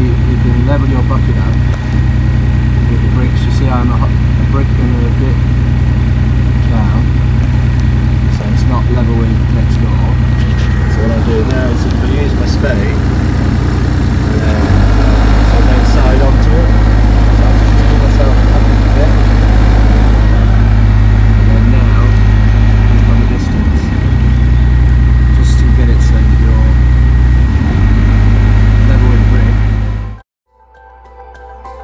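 Mini excavator's diesel engine running loud and steady while digging, its note dropping lower about halfway through and dipping briefly twice near the end. Occasional knocks come through over the engine.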